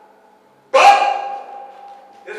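A man's sudden loud shout into a handheld microphone, starting about two-thirds of a second in, its held vowel fading away through the PA.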